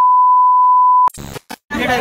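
A loud, steady test-tone beep of the kind played with TV colour bars, dubbed in as an editing effect. It cuts off about a second in and is followed by a few brief bursts of static-like glitch noise, with men's voices starting near the end.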